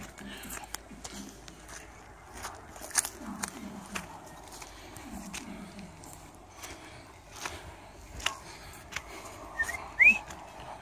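Scattered sharp clicks and knocks from footsteps and from handling of the phone while walking over dry ground. A distant low voice calls twice, about three and five seconds in, each time falling in pitch.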